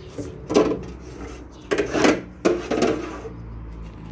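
A few separate knocks and rattles as a piece of a Toyota Camry door's window assembly is unfastened and worked forward out of the door frame.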